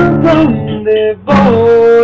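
Acoustic guitar strummed, with a strong strum about a second and a half in, as a man sings a held note over it.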